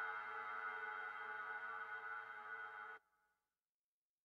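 Quiet, sustained electronic synthesizer chord closing the track, fading slightly, then cutting off abruptly about three seconds in, leaving silence.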